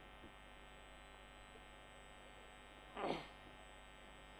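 Faint, steady electrical hum and buzz from the recording, with a brief vocal sound about three seconds in.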